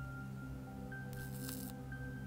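Soft background music of sustained tones. About a second in comes a faint, brief crackling hiss: a small high-voltage spark fizzling between a plasma-ball power supply's electrode wire and a coin.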